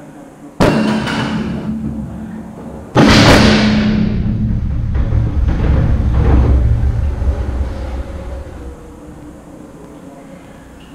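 A lithium-ion 21700 NCA cell going into thermal runaway inside a battery module: a sudden loud burst about half a second in, then a louder one about three seconds in. Each burst is followed by a rushing hiss and a low rumble, which die away over the next few seconds.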